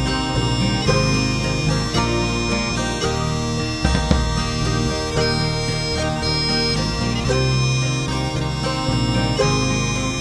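Instrumental break in a Scottish folk song: bagpipes play the melody over a steady drone, with band accompaniment.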